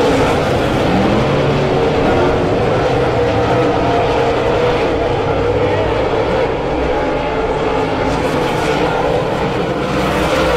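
A pack of dirt-track modified race cars' V8 engines running around the track, a loud, steady drone of several overlapping engine tones. It dips slightly about six and a half seconds in.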